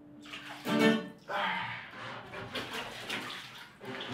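Water splashing and sloshing in a bathtub as a person moves about in it, irregular and noisy, with a short louder burst about a second in. A last sustained guitar note fades out in the first moments.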